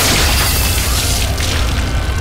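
Horror-film sound effect: a loud boom with a rushing hiss that fades over about a second and a half, over a deep steady rumble, as blood sprays across the room.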